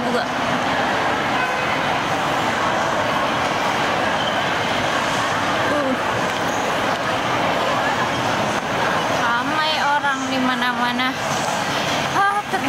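Busy shopping-mall crowd hubbub: a steady wash of many people's chatter and movement. A nearby voice speaks briefly about ten seconds in.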